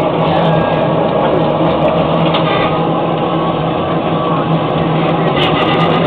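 Automatic mini-donut fryer running, with a steady mechanical hum.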